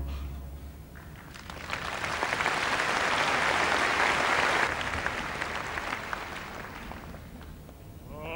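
Audience applauding, swelling about a second and a half in and dying away over the last few seconds.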